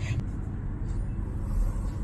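A steady low background rumble with no distinct strokes or clicks.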